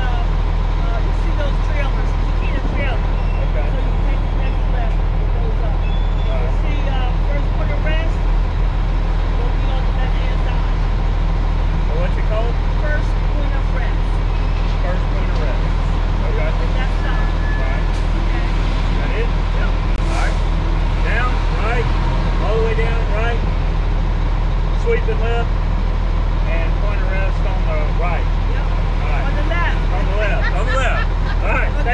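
A 2000 Freightliner FLD 112 semi truck's diesel engine idling steadily, heard from inside the cab with the door open, under people talking.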